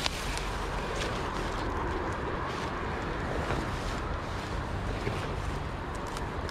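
Steady wind rumble on the microphone, with a few faint rustles or ticks over it.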